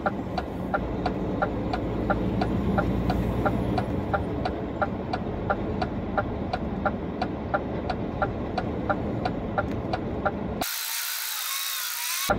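Truck's turn-signal relay ticking evenly, about three ticks a second, over the engine and road rumble inside the cab. Near the end the rumble cuts out for about a second and a half, leaving a hiss.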